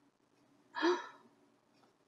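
A woman's single short, audible breath about a second into a pause in her reading aloud.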